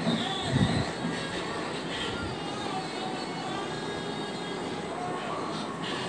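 Steady background hum and hiss, with a single low thump about half a second in.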